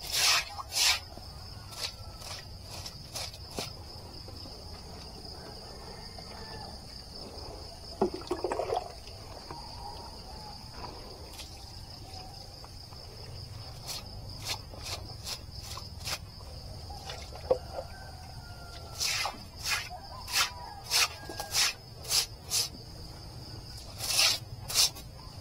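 Stiff stick broom sweeping a wet concrete floor in quick short strokes, in bursts near the start, around the middle and again in the last few seconds, with a short lower scrape about eight seconds in. A steady high insect drone runs underneath.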